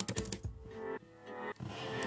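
Computer keyboard typing, a quick run of key clicks near the start, over background music.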